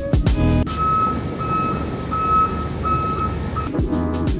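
A vehicle's reversing alarm beeping in a steady series of about five high beeps, over a low rumble of street and engine noise. Music cuts out for the beeping and comes back near the end.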